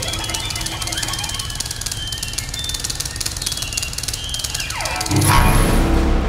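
Contemporary chamber ensemble of harp, cello, wind instrument and piano playing: a high squealing tone held for several seconds then sliding down steeply, over a dense, rapid crackle. About five seconds in, a louder low sustained sound enters.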